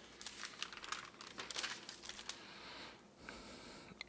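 Faint, irregular small clicks and crinkling, busiest in the first two seconds, with a few more after about three seconds.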